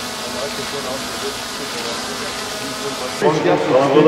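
Steady outdoor background noise with a group of people murmuring indistinctly. A little after three seconds in it cuts to men talking in a large, echoing indoor hall.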